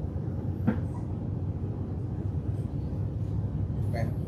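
Steady low rumble of background machinery, with one faint click a little under a second in.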